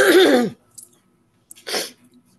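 A person sneezing loudly at the start: a half-second voiced burst whose pitch falls. A shorter breathy burst follows near the end.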